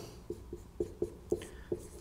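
Whiteboard marker writing on a whiteboard: a quick string of short taps and strokes, about four a second, as the pen sets down and lifts for each small mark.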